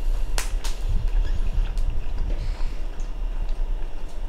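A man chewing a mouthful of grilled beef close to the microphone, with two sharp clicks about half a second in, over a steady low hum.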